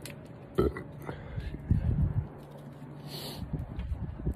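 A person making low, wordless vocal sounds, irregular and burp-like, while in pain from eating an extremely hot sauce; a short hiss of breath comes about three seconds in.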